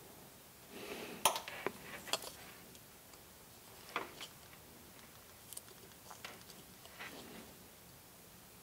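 Faint handling noise of a Singing Machine toy karaoke microphone being taken apart: soft rubbing with scattered small clicks of its plastic and metal parts as the head is worked out of the body tube. The sharpest clicks come about one and two seconds in.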